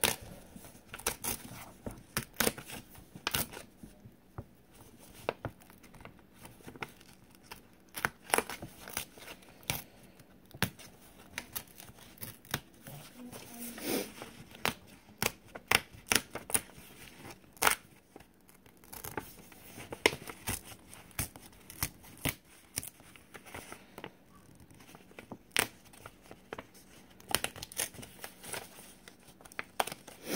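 Paper cut-out pieces being poked out of a craft activity sheet by hand: irregular sharp paper pops, tearing and rustling.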